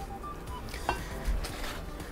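A table knife spreading soft rice salad over a thin ham slice on a cutting board: faint scraping, a small click about a second in, then a soft thud, over faint background music.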